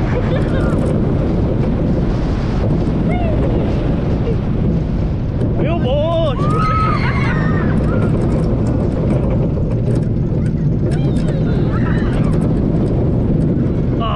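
Roller coaster train running along steel track, a steady loud rumble of its wheels mixed with wind rushing over the microphone. About six seconds in a rider gives a brief cry or laugh.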